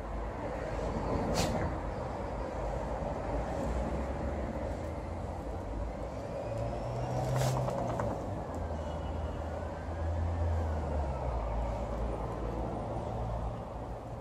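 Steady low rumble of vehicle traffic, with two short hisses, one about a second and a half in and one about seven seconds in.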